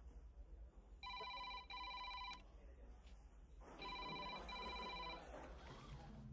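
Telephone ringing in a double-ring pattern: two short electronic rings about a second in, then another pair of rings about four seconds in.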